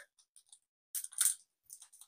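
Foil wrapper of a Digimon Card Game booster pack crinkling briefly as the pack is handled, in a couple of short, faint crackles about a second in.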